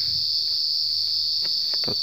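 Steady, high-pitched insect chorus, a continuous even drone that runs without a break.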